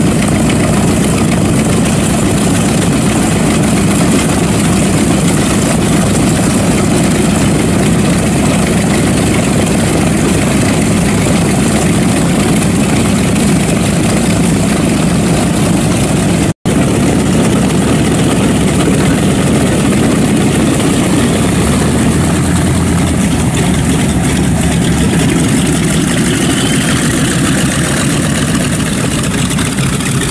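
Both Wright R-2600 radial engines of a North American B-25 Mitchell bomber running at low power as it taxis, a loud, steady sound that eases slightly near the end as the plane moves past.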